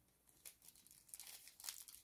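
Faint crinkling of a small clear plastic seed packet handled between the fingers while a seed is picked out of it, as a few soft rustles scattered mostly through the second half.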